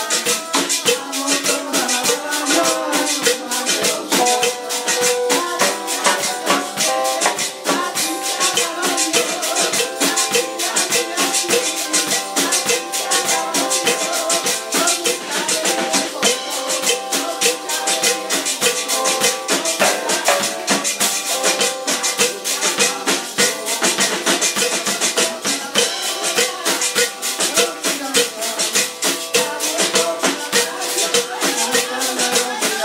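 Live church worship music, with maracas shaken in a fast, even rhythm over held musical notes.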